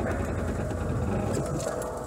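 An old Jeep's engine running as it drives off-road, heard from inside the cab, with a few light clicks and rattles.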